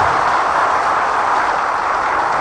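Crowd applause: a dense, steady clapping with no voice over it.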